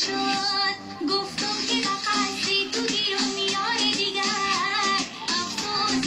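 Pashto dance song playing: a high singing voice over instrumental backing.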